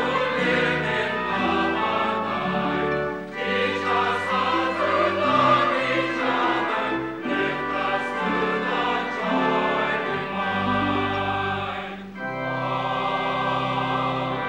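Mixed church choir of men's and women's voices singing a sacred piece in full chords, phrase by phrase with short breaks between, ending on a long held chord.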